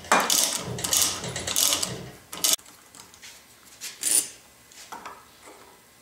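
Metal parts handled on a wooden workbench: a scraping, rubbing noise for about two and a half seconds, then a few sharp clicks as pieces are set down.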